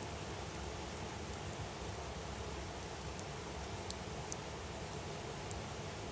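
Wood fire burning with a steady hiss, and a few sharp crackles and pops from the logs around the middle.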